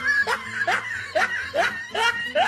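A person laughing in a steady run of short bursts, about two a second, each rising in pitch.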